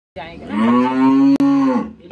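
A cow mooing: one long, drawn-out call lasting about a second and a half, starting about half a second in and falling away at the end.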